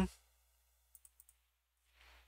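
Near silence, with a few faint computer clicks about a second in as the debugger is stepped on to the next line of code.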